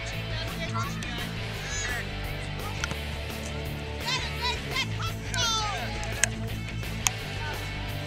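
High voices on a soccer sideline, one of them singing in short bending phrases, over a steady low hum. Two sharp knocks come in the second half.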